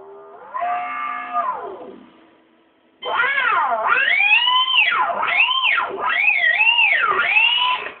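Electric guitar note with its pitch bent up and down in wide swoops. A shorter note rises and falls about half a second in. From about three seconds a louder held note sweeps up and down repeatedly.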